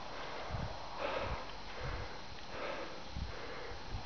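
Soft puffs of breathing-like noise, about one a second, close to the microphone, with a few dull low thumps.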